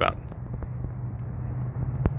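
Steady low mechanical hum, unchanging throughout.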